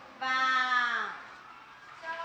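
A voice calling out one drawn-out syllable, loud, its pitch sliding down over about a second.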